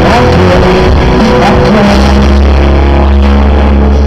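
Rock band playing live, loud and dense: guitars over a heavy sustained bass line and drums, heard from the crowd.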